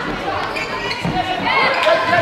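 A football striking and bouncing on a sports-hall floor during play, with a few sharp knocks ringing in the large hall. Players' and spectators' voices call out over it.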